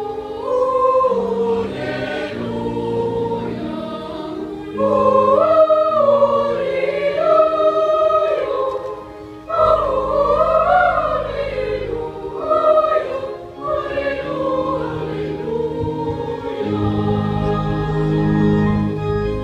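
Boys' choir singing in parts, in phrases that rise and fall and pause for breath, over steady sustained low organ notes.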